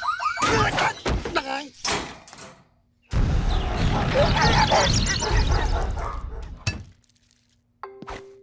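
A wailing shop alarm cuts off, followed by a string of knocks and crashes. After a moment's silence comes a loud din of escaping pet-shop animals, with many birds chirping and squawking over a heavy rumble of running, lasting about four seconds before it dies away.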